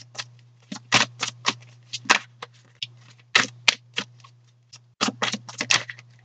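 A tarot deck being shuffled by hand: a run of quick, sharp card flicks, several a second and irregular, with a brief pause about five seconds in.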